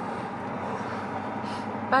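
Steady road and engine noise heard inside the cabin of a moving car, with a voice starting right at the end.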